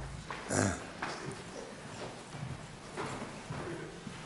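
Footsteps of a person walking up to a lectern, quiet over room noise.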